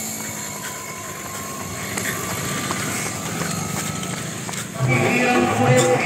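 Steady outdoor background noise with no distinct source, then music with bass notes comes in suddenly about five seconds in.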